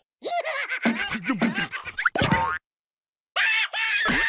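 Cartoon larva character laughing in squeaky, wordless bursts, then a springy comic boing sound effect about two seconds in.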